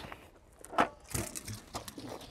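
A few short knocks and gravelly scuffs as the switched-off petrol post driver is slid off the guidepost and set down on the gravel shoulder, with footsteps crunching.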